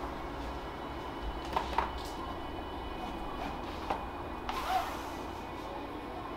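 Handling sounds over a steady low room hum: a few light clicks and knocks around two seconds in and again near four seconds, then a short scrape about four and a half seconds in.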